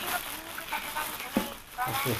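Thin plastic carrier bag rustling and crinkling as a can is pulled out of it.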